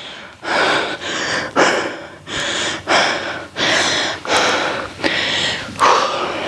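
A woman breathing hard and fast from exertion during a set of bent-over dumbbell rows: about eight forceful breaths, one every second or less.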